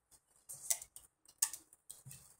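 A few short, sharp clicks or ticks, the two loudest about three-quarters of a second apart, with fainter ones around them.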